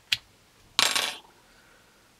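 A light metal click, then about a second in a short metallic clatter like a coin dropped on a hard surface: small steel parts of a homemade radiator-cap pressure tester, its cotter pin and radiator cap, being taken apart by hand.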